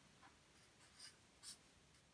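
A felt-tip marker drawing on a large paper chart on the wall: three short, faint strokes as a cross is marked.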